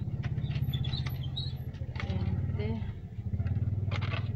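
Coins clinking and dropping as they are shaken out of a plastic piggy bank onto a cardboard pile of coins, over the steady low drone of an idling motor-vehicle engine.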